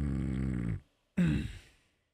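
A man's low, drawn-out closed-mouth "mm" that stops a little under a second in, then after a brief gap a shorter vocal grunt whose pitch falls away.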